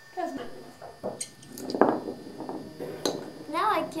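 Several sharp clicks and one louder knock of a small wooden spinning top on a wooden floor: a spin that doesn't take. A girl's voice is heard near the end.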